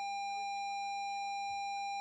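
A steady electronic bleep tone held unchanged, cutting off speech mid-sentence. It is a censor bleep laid over a spoken phrase.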